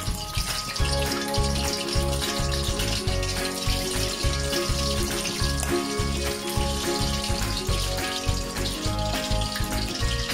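Background music with a steady beat, over the sizzle of a stuffed crab shell deep-frying in hot oil in a wok.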